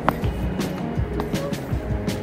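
Background music with held tones, over a few short knocks and scuffs of footsteps on stone steps.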